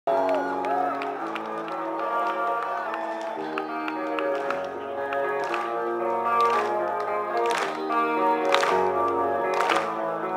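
Live rock band music in a large hall: guitar chords ringing out and changing about once a second at the start of a slow song, with crowd voices and shouts breaking through now and then.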